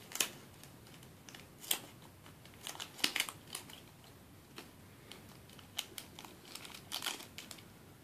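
Crinkly plastic packaging of a small Shopkins toy being handled and pulled open by a child's hands, in irregular sharp crinkles that are loudest about three seconds in and again near the end.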